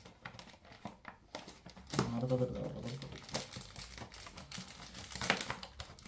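Plastic packaging crinkling and clicking as it is handled, in irregular bursts. A short low hum comes about two seconds in.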